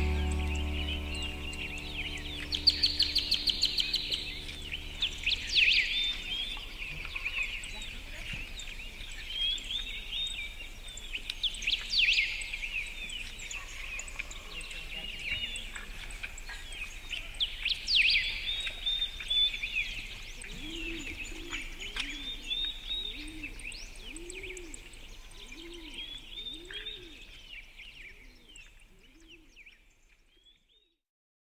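Many small birds chirping and trilling over one another in a morning dawn chorus. A lower call repeats about once a second in the last third. The birdsong fades out near the end.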